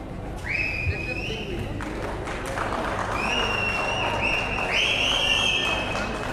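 Spectators applauding and cheering with several long, high whistles, one about half a second in and three overlapping ones from about three seconds in, the last the loudest.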